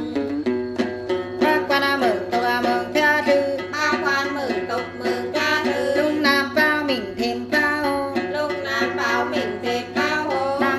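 Hát then: women singing a Then chant to a plucked đàn tính, a long-necked gourd lute, strummed in a steady rhythm. The voice slides down between held notes several times.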